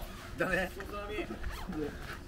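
A jacket zipper being pulled, with a man laughing and talking over it.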